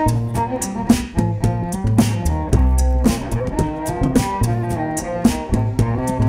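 Cello bowed live over a looped beatboxed beat: an instrumental stretch of a classical hip hop song, with sustained cello notes, a repeating low bass figure and a steady percussive pulse.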